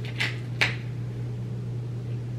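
Steady low hum of a hotel room's ventilation, with two brief sharp noises about a quarter and two-thirds of a second in.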